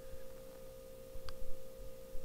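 A steady, unwavering hum on one mid-pitched tone over a low, uneven rumble, with a faint tick a little past halfway.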